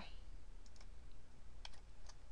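A few faint clicks from a computer keyboard and mouse as a formula is edited, one about a second in and two near the end, over a low steady hum.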